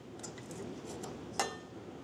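Light metallic clicks from a reel mower cutting unit being handled by hand on the bench: a few faint ticks, then one sharper click about a second and a half in.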